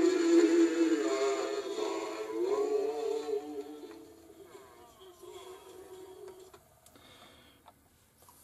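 A vinyl record of music with singing, played deliberately at the wrong speed on a suitcase-style record player and heard from its headphone socket. It fades away over a few seconds as the volume knob is turned down, and is almost gone by the end.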